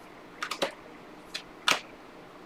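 A stack of Panini Prizm trading cards being flipped through by hand: a handful of short, sharp snaps and ticks as cards slide off and onto the stack. The loudest snap comes near the end.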